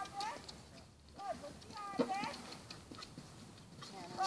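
A horse's hoofbeats on sand footing as it canters, heard faintly as scattered soft thuds, mixed with a few brief sounds of a person's voice.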